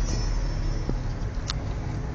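Steady low rumble of a motor vehicle running, with a couple of brief faint clicks.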